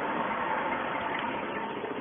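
1967 Jeep Commando engine idling steadily after a push-button start, with a thin steady whine running through it.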